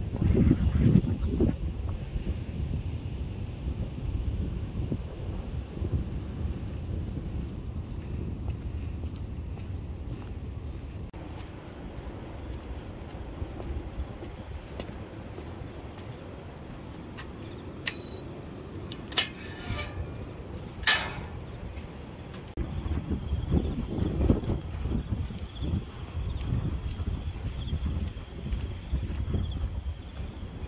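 Wind rumbling on the camera microphone while walking outdoors. About two-thirds of the way in come a short electronic beep and a few sharp metallic clacks from a security gate's access reader and latch.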